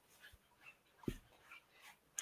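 Near silence: faint room tone, with one brief, faint low sound about a second in.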